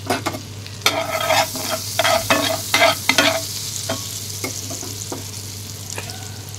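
Oil and butter sizzling in a non-stick pan with cumin seeds and crushed cardamom in it, a steady hiss. Over it comes a quick run of short knocks in the first three seconds or so, then a few scattered ones.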